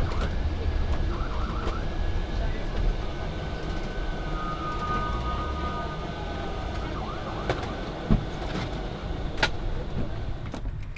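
Ambulance siren heard from inside the cab over a steady engine and road rumble. It goes from fast rising-and-falling sweeps to steadier held tones in the middle and back to sweeps, with a sharp knock about eight seconds in.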